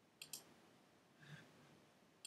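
Near silence broken by two faint, quick, sharp clicks close together just after the start, then a soft faint noise about a second later.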